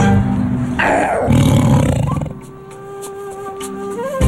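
Music with a lion's roar sound effect about a second in, falling in pitch and lasting just over a second, followed by quieter music with long held notes.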